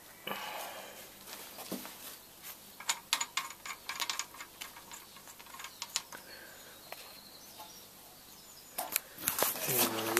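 Faint, scattered light clicks and a brief scrape from hands handling the rusty cylinder head and head bolts of a Copeland refrigeration compressor.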